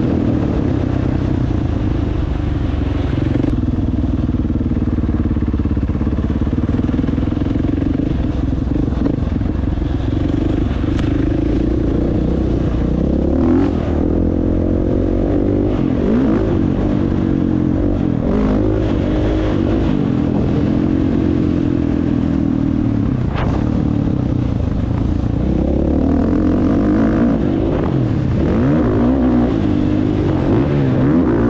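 Dirt bike engine heard from the rider's own position while riding a dirt trail, its pitch rising and falling with the throttle and gear changes. A few brief sharp clicks or knocks cut through now and then.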